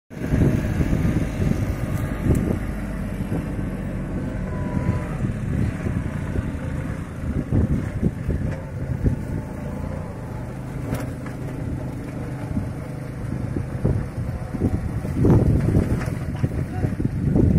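Compact tractor's diesel engine running steadily under load as it pulls a sugarcane trash-stripping attachment along the cane rows, with irregular clatter from the machine working through the cane.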